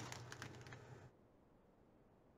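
Near silence: a few faint clicks and soft rustles of fabric being pinched and folded into a mitred corner during the first second, then the sound cuts out completely.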